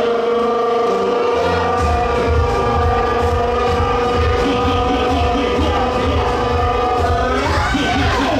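Loud dance music played for a runway walk: one long held note runs over a pulsing bass beat that comes in about two seconds in, and it gives way to a sweeping change in pitch near the end.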